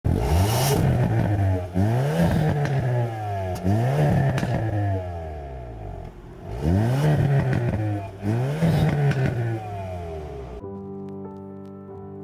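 Hyundai Kona N's 2.0-litre turbocharged four-cylinder revved five times through its exhaust, each blip rising and falling back, with sharp cracks from the exhaust as the revs drop. Near the end, soft music takes over.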